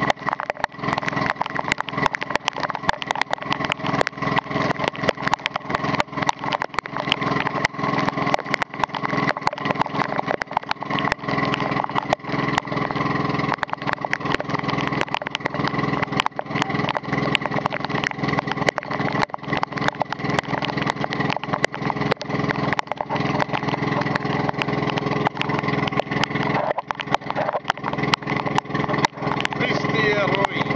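Engine of a motorized outrigger boat running steadily at an even speed, with heavy rain hissing on the river and a constant stream of sharp taps from raindrops striking the camera.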